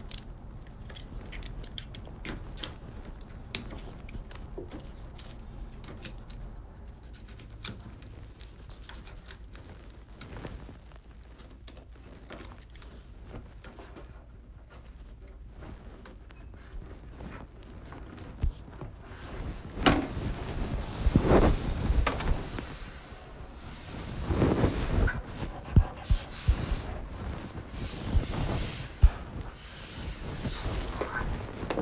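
Faint handling noises and light ticks, then from about two-thirds of the way in a louder, rough rubbing and scraping with a few sharp knocks as hands press and smooth 3M Di-Noc vinyl wrap film over a desk top.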